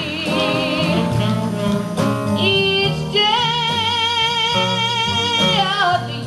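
Live jazz quintet with a woman singing long, wavering vibrato notes over upright double bass and band accompaniment.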